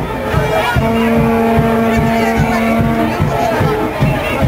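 Street-procession noise of a Jouvert steelband crowd: a steady pulse of low drum-like beats under crowd voices. About a second in, a loud low horn-like tone is held for about two seconds and then stops.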